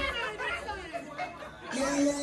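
Party crowd chattering while the music drops out; dancehall music comes back in near the end.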